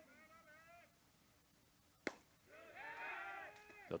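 Faint, distant, drawn-out shouting from the field, with one sharp pop about two seconds in: a pitch landing in the catcher's mitt. A longer, louder shout follows the pop.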